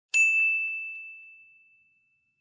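A single bright ding sound effect, struck just after the start and ringing as one clear tone that fades away over nearly two seconds.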